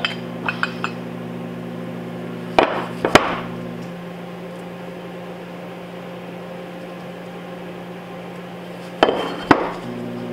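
Aluminium bait mold halves knocking against each other and the workbench as the mold is opened and handled: light clicks at the start, two sharp metal knocks about two and a half to three seconds in and two more near the end. A steady electrical hum runs underneath.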